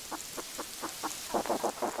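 Amplified begging sounds of an ant nest, the ant-like call that the Alcon blue caterpillar mimics to get fed: a quick run of short chirping pulses, several a second, growing louder in the second half.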